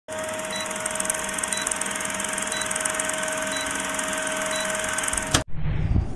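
Vintage film-countdown sound effect: a steady projector-like whir and crackle with a short high beep about once a second, cut off by a sharp click a little after five seconds. A low rumbling swell starts just before the end.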